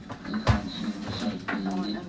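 Indistinct speech from a television playing in the room, with a sharp knock about half a second in.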